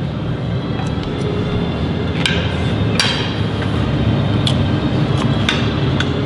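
Metal cutlery clinking against a ceramic plate a few times, two sharper clinks a couple of seconds in, over a steady low background rumble.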